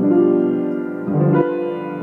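Grand piano chords ringing out, with a new chord struck about a second in: a demonstration of the seventh chord.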